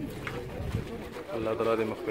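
A group of men's voices chanting together in a low, drawn-out Arabic-sounding recitation, swelling loudly in the last half second or so.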